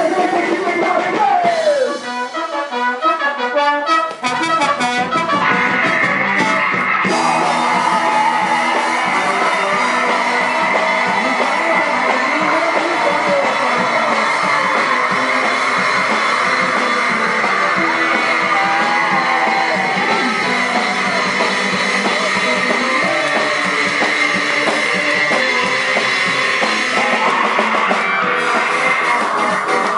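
Punk rock band playing live: guitars and drum kit at a steady loud level, the sound thinning to a quieter break about two to five seconds in before the full band comes back in.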